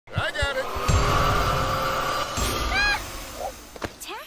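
Vacuum cleaner running with a steady whine, then cutting off about three seconds in. A short high-pitched cry comes just before it stops.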